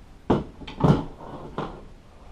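Four quick knocks and thumps, the loudest about a second in: a wooden headrest base and a foam block being handled and set down on a plastic folding table.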